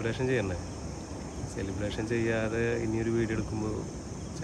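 Crickets chirping steadily, a continuous high-pitched trill under a man's voice.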